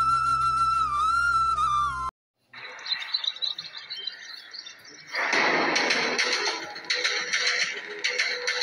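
Background music: a flute melody that cuts off about two seconds in. After a brief silence and a quieter stretch, another music track comes in loud about five seconds in.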